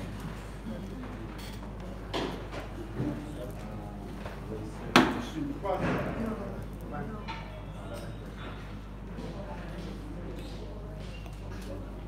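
People talking in a room over a steady low hum, with a sharp knock about five seconds in.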